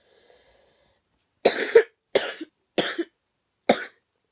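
A young boy coughing with a cold: a run of about five short, harsh coughs, starting about a second and a half in.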